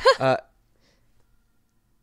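A woman's short, high-pitched laugh: one brief burst lasting under half a second.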